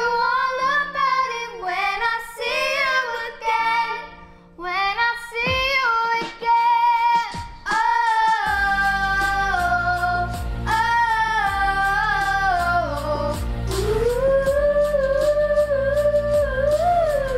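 Three girls singing together in harmony, holding long notes that glide between pitches. A low, steady accompaniment comes in about halfway and continues under the voices.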